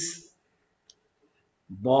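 A man's lecture voice trailing off, a pause of near silence with one faint short click about a second in, then the voice resuming near the end.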